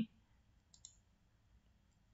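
Near silence with two faint computer mouse clicks in quick succession, a little under a second in.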